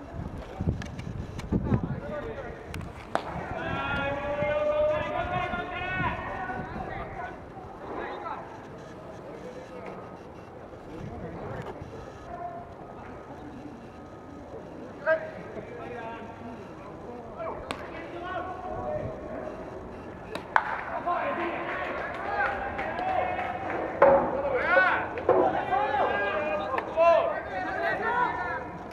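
Voices of players and spectators calling out at a baseball game, denser and louder in the last several seconds, with a few sharp single cracks in between.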